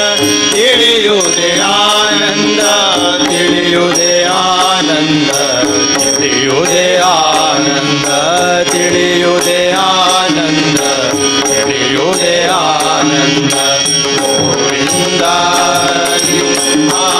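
Live Hindu devotional bhajan: a voice sings a long, wavering, wordless melodic line over a steady harmonium drone, with tabla keeping time.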